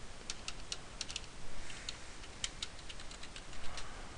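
Computer keyboard being typed on: a quick run of key clicks in the first second, then a few scattered keystrokes.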